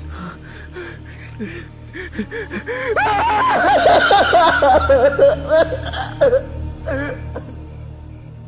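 Film soundtrack: low background music under a person's non-speech vocalising. About three seconds in, the voice breaks into a loud, breathy outburst with rapidly wavering pitch lasting about three seconds, with a shorter burst near the end.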